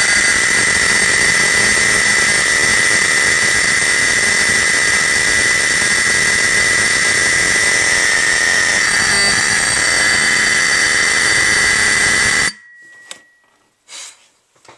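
Simplex 4051 24-volt DC fire alarm horn sounding a continuous, raspy blare with its volume screw tightened all the way down. It cuts off suddenly about twelve seconds in, and a faint tone lingers for about a second. The owner counts this run a fail and thinks the horn's positioning or an over-tight volume screw caused it.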